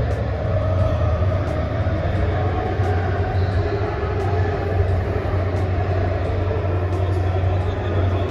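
Steady low rumble under a hubbub of voices, echoing in an underground car park.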